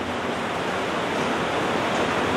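Steady, even hiss of background noise with no other sound standing out.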